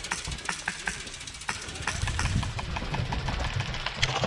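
Airsoft skirmish: scattered sharp clicks of airsoft guns firing and BBs striking the wooden cable-spool cover, about a dozen at irregular intervals, over a low rumble on the microphone.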